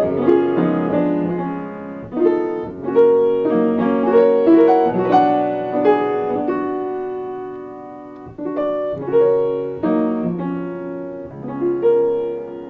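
Solo acoustic piano playing a gentle berceuse (cradle song), with sustained chords under a slow melody; the playing thins and quietens around eight seconds in, then picks up again with new chords.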